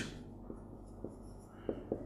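Marker pen writing on a whiteboard: faint strokes with a few light taps as the tip meets the board.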